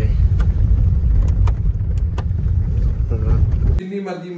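Steady low rumble of a car being driven, heard from inside the cabin, with scattered light clicks and knocks. It cuts off abruptly near the end.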